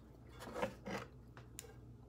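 A few faint, scattered clicks of metal handling as spring-loaded Irwin Vise-Grip wire strippers are picked up and closed onto a wire to hold it for soldering, over a low steady hum.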